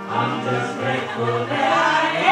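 Live band performance: several voices singing together over electric guitar and bass guitar, the bass playing a run of short repeated low notes.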